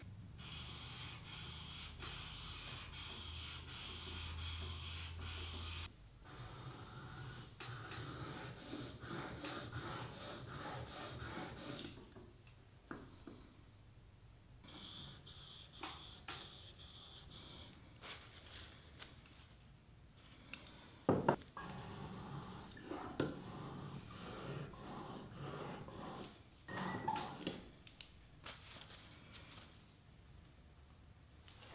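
Steel chisel rubbed back and forth on 1,000- and 4,000-grit waterstones, flat on its back and then clamped in a honing guide: runs of soft, even scraping strokes of polishing and sharpening. A couple of sharp knocks come in the second half as the chisel and guide are handled.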